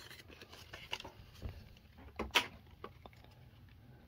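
Faint rustling and light clicks of plastic packaging and a trading card being handled, with one sharper crinkle a little past two seconds in.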